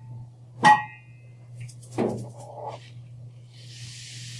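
A single ringing note about a second in, struck or plucked, then a short clatter about two seconds in and a soft hiss near the end, all over a steady low hum.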